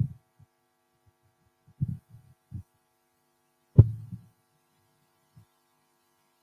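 Low, dull thumps and bumps of a handheld microphone being handled, a few scattered through, the loudest about four seconds in with a short click on it, over a faint steady electrical hum.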